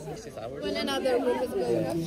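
Background chatter: several people talking at once, with no one voice in front.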